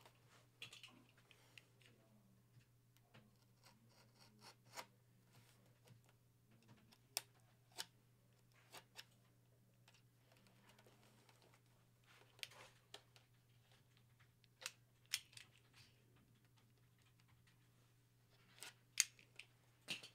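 Faint, scattered clicks and scrapes of a box cutter cutting into the end of a bat's tube packaging, about eight sharp ticks spread over long quiet stretches, over a faint steady low hum.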